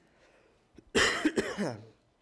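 A man coughing: a few quick coughs starting about halfway through, loud against the quiet before them.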